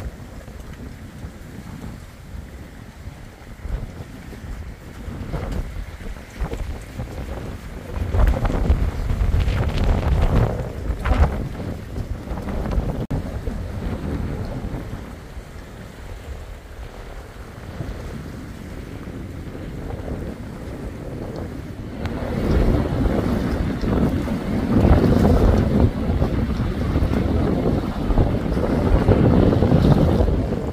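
Wind buffeting the microphone outdoors by open water, a rumbling noise that comes in gusts, loudest about eight to twelve seconds in and again from about twenty-two seconds on.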